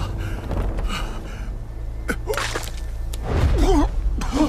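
Animated fight sound effects: several sharp whooshes and hits over a steady low rumble, then a man's pained gasps and groans near the end.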